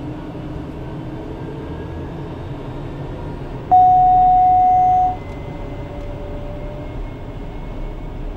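TBM 960's Pratt & Whitney PT6E-66XT turboprop spooling up during engine start, heard inside the cockpit: a steady whine with slowly rising tones. The start is a good one. About four seconds in, a loud steady single-pitch tone sounds for about a second and a half.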